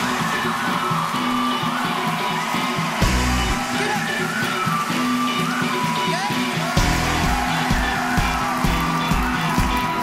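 Live pop-rock band playing a song intro: a whistled hook over guitar and drums, with a heavier bass-drum beat coming in about seven seconds in. An audience whoops over the music.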